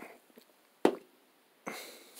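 A person taking a quick drink: a short gulp about a second in, then a breathy exhale near the end.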